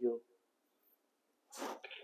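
A man's voice ending a word, then silence, then a short sharp intake of breath about a second and a half in, just before he speaks again.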